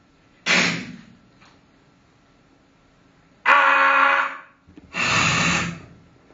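A man's voice performing a sound poem of isolated letter sounds, not words: a short breathy burst about half a second in, then after a pause two loud held sounds near the end, the first with a clear pitch, the second harsher and noisier.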